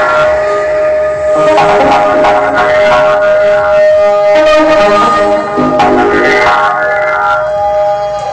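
Electronic dance music played by a DJ over a festival sound system. A long held synth note runs under shifting, layered synth lines.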